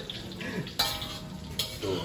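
Telur barendo frying in hot oil in a wok, sizzling steadily while metal utensils scrape against the pan, with a sudden metal clink a little under a second in.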